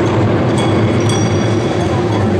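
Taiko drums played with sticks in a loud, continuous rolling beat, with a small hand-held metal gong ringing sharply about twice a second over it.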